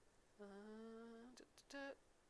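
A woman humming softly to herself: one long steady note, then a short higher note near the end.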